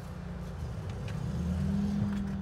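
Low motor-vehicle rumble that builds up through the second half, with a steady hum joining near the end.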